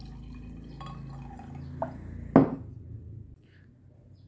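Water poured from a tall glass into a stemless wine glass holding a spoonful of powdered collagen drink: a steady pour of about two seconds, then one sharp clink of glass.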